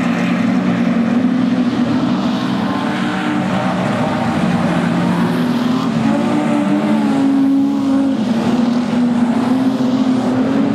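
Several speedway street sedan race cars racing together, their engines running at high revs with overlapping notes that rise and fall in pitch as they go by.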